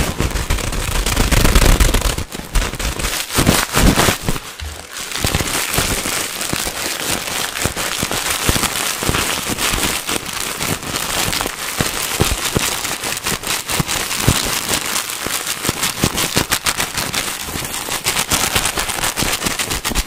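Clear plastic packaging crinkled and squeezed fast and hard right against the microphone, making dense, crackling rustle throughout, with heavy low thumps in the first two seconds.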